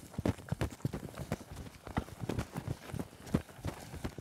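Quick, uneven footsteps on a hard paved surface, about four or five knocks a second, as if someone is hurrying or running.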